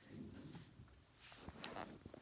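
Faint handling noise as the recording phone is moved and repositioned, with a single soft click about one and a half seconds in.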